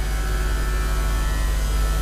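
Steady low electrical hum, with a few faint, steady tones above it, from a microphone and loudspeaker system.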